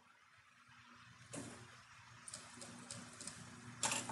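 Faint steady hum of an industrial sewing machine's motor, with a soft knock about a second in and a few light clicks later, as the zipper and fabric are set under the presser foot before stitching.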